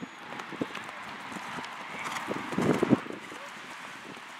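Horse's hooves thudding on turf at the canter, an irregular run of dull beats that is loudest in a cluster a little before the end.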